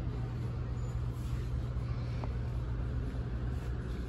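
A steady low hum with a faint even rumble under it, the background room tone of a large store. No distinct events stand out.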